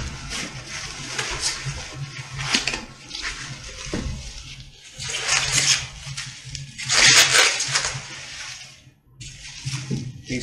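Plastic and foam packing wrap rustling and crinkling as it is pulled out of a cardboard box, with a few knocks from the box; the loudest crinkle comes about seven seconds in.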